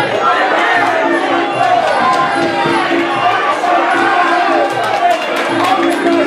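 Fight crowd shouting and cheering, many voices overlapping, over music with a steady beat.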